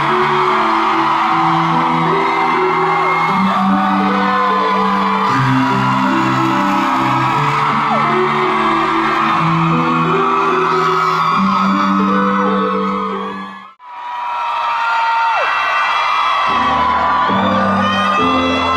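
Live amplified pop music in a large hall with the audience whooping and screaming over it. The sound drops out briefly about fourteen seconds in, then music with a deeper bass line starts again under more screaming.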